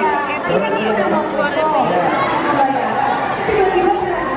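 Several people talking at once in a large, busy hall: overlapping crowd chatter with no single clear voice.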